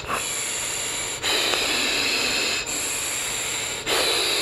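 Air rushing through an Arctic sub-ohm tank's wide-open airflow holes as a man breathes in and out through the unpowered tank. It makes a steady hiss with a faint high whistle, and the breaths alternate every second or so like Darth Vader's breathing.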